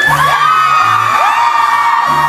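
Loud pop music with a bass line stepping between held notes, with high screams and whoops from a crowd that rise and are held over it.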